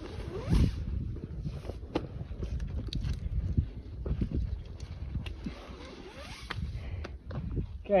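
Old rock-climbing rappel rope being pulled and wrapped around a tree trunk to take up the excess: an irregular rasping, rustling rope friction with scattered sharp clicks and a low rumble underneath.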